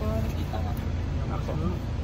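Steady low rumble of a car heard from inside the cabin, with faint voices over it.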